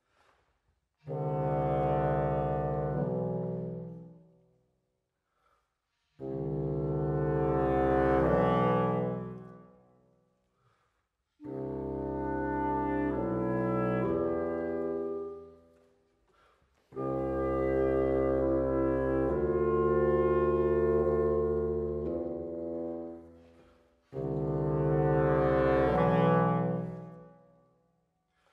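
Reed trio of oboe, clarinet and bassoon playing long held chords in five separate phrases, each lasting a few seconds and shifting once or twice in pitch, with short silences between them.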